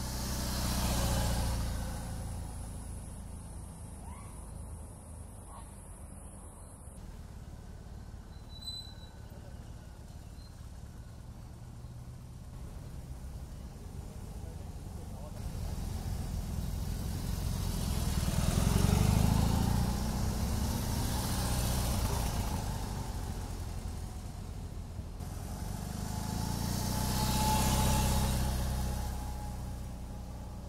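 BMW R18's 1800cc boxer twin engine running as the motorcycle rides along. It grows louder as it passes close about a second in, again around the middle and once more near the end.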